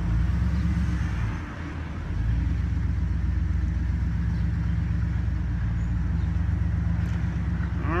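Pickup truck engine running steadily at low speed, heard from inside the cab as the truck rolls along. The engine note drops briefly about a second and a half in, then picks up and holds steady.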